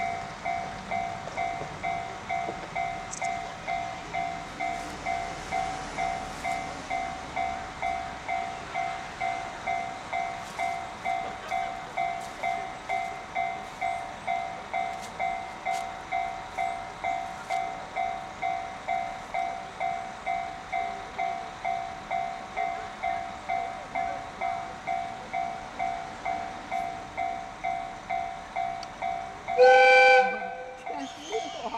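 Japanese railway level-crossing alarm ringing steadily, about two strikes a second, warning of the train about to depart. Right at the end a loud train horn sounds from the KiHa 261 series diesel express as it sets off.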